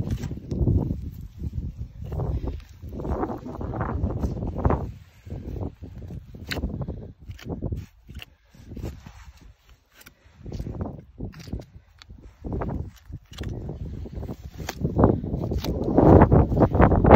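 A goat's hide being pulled back and cut free from the carcass with a knife: irregular rustling and scraping with a few sharp clicks.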